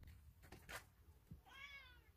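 A cat gives one short, soft meow near the end. Before it there are a couple of faint ticks over near silence.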